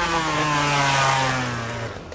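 Yamaha YZ125 two-stroke motocross bike held on the throttle through a wheelie. Its engine note is steady and sags slightly in pitch, then cuts off just at the end.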